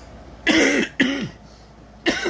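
A man coughing twice in quick succession, two short harsh coughs about half a second apart.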